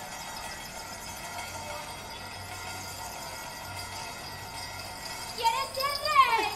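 A faint steady held tone with overtones, then about five seconds in a performer's voice starts loud, its pitch sliding up and down in long swoops.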